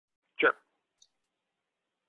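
Speech only: a man's single short spoken word, then near silence broken by one faint tick about a second in.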